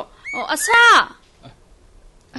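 A high-pitched voice speaking a short phrase, ending in a steeply falling exclamation about a second in.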